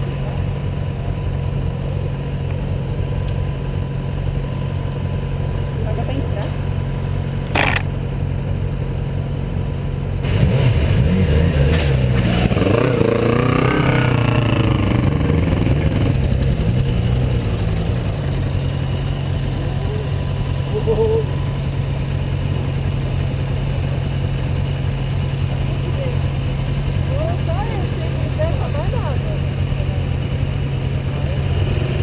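Motorcycle engine running at a steady idle, with one sharp click about eight seconds in. From about ten seconds in the engine revs and pulls away, its pitch rising and falling for several seconds, then it settles back to a steady hum.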